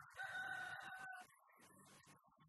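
Rooster crowing once: a single held call of just over a second, ending about a second in.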